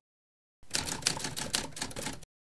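A sudden start after silence into a fast, even run of sharp mechanical clicks, roughly ten a second, as an outro sound effect.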